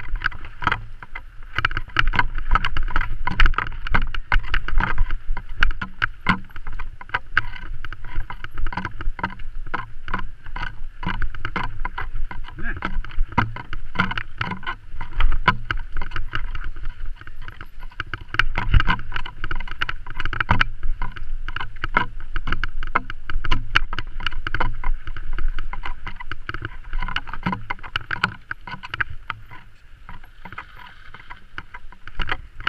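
Mountain bike riding fast over rough, rooty dirt singletrack, heard from an on-board camera: a constant, irregular clatter and rattle of the bike and camera mount over bumps, over a steady low rumble of wind and tyres.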